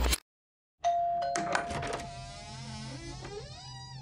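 After a brief silence, a doorbell rings about a second in with a steady high tone. A cluster of tones gliding up and down follows and fades away.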